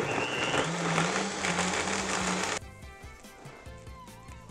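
Countertop blender running, puréeing a thick sun-dried tomato and tahini dressing, then switched off suddenly about two and a half seconds in.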